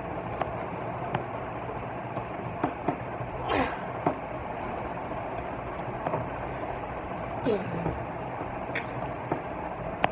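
Steady background hiss with faint light clicks of small plastic toy wheels and a bolt being handled, and a few short, falling vocal sounds a few seconds in and again later.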